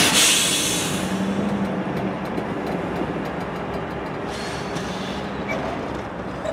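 Diesel road locomotive, a GE Dash 9-40CW, running as it moves off light. Its engine gives a steady low tone throughout, with a brief loud hiss at the start and scattered light clicks.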